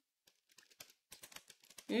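Quiet, quick, irregular keystrokes on a computer keyboard as a line of code is typed.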